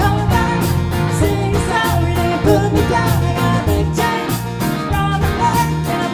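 A live country band playing a song with drums, electric bass, and acoustic and electric guitars over a steady beat.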